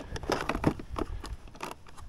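Hands handling wires and plastic XT60 connectors in a cordless mower's battery compartment: a run of small, irregular clicks and taps.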